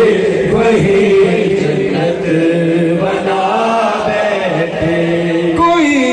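A man's voice, amplified through a microphone, chanting a manqabat (an Urdu devotional poem in praise of Ali) in long held, wavering notes.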